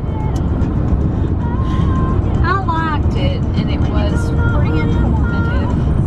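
Steady road and engine noise inside a car's cabin at highway speed, a low rumble throughout, with a voice or music lightly over it.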